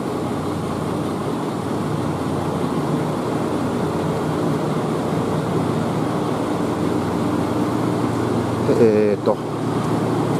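Ex-Kyoto City Tram 1900-series streetcar standing at a platform, its onboard equipment giving a steady hum over a wash of road traffic.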